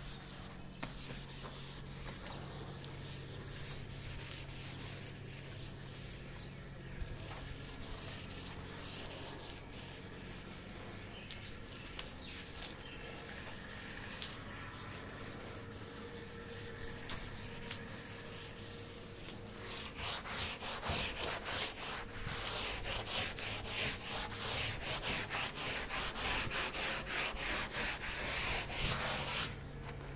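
Scrubbing of wet, soapy tiles: rapid back-and-forth rubbing strokes that grow harder and louder about two-thirds of the way in. A steady low hum runs underneath.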